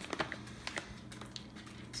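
Scattered light clicks and rustling of a hand digging into a plastic bag of bacon bits.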